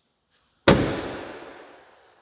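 The rear swing-out tailgate of a 2023 Jeep Wrangler slammed shut: one loud bang about two-thirds of a second in, echoing on for more than a second.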